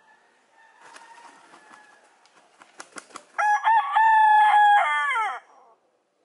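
A rooster crowing once: a pitched call about two seconds long that holds steady, then falls away at the end. A few short clicks come just before it.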